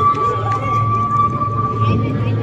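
People's voices over a steady high tone and a low hum.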